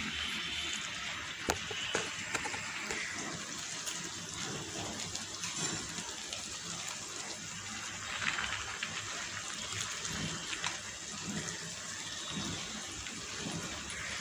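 A steady hiss under the cooking, with a few sharp metal clinks of a steel strainer against the steel rice pot about a second and a half to two seconds in.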